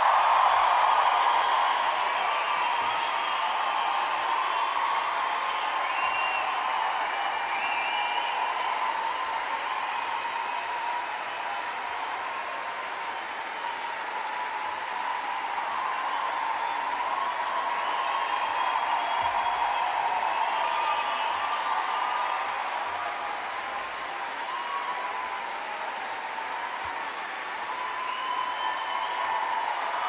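A large audience applauding and cheering. It is loudest at the start, then holds steady, with a few high calls rising above the clapping.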